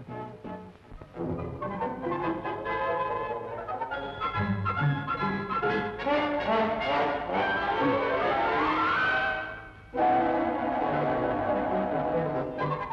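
Comic film-score music with brass. Late on, a long upward pitch slide, after which the music briefly drops out and starts again.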